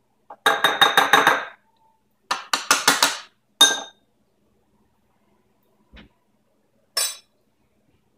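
A metal spoon clinking against a glass bowl while scooping chia seeds. Two quick runs of rapid, ringing clinks come in the first three seconds, then single clinks at about three and a half and seven seconds in.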